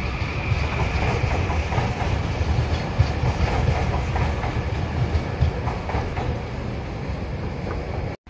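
A passenger train running past on steel rails: a steady rumble with scattered light wheel clicks, and a faint high whine that fades away in the first second or two.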